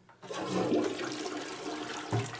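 American Standard toilet flushing: the rush of water starts about a third of a second in and carries on steadily.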